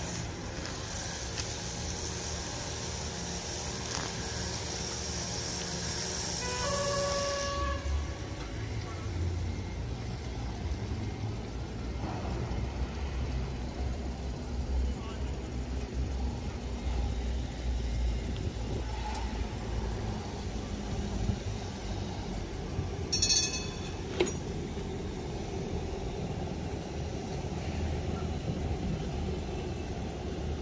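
Siemens Combino tram running on street track: a steady low rumble under city street noise. A brief pitched signal sounds about seven seconds in, and two sharp high clicks come about 23 seconds in.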